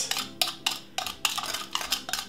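Metal spoon clinking against the sides of a small clear bowl while stirring sugar and mixed spice together: a run of light, quick clinks, about four a second.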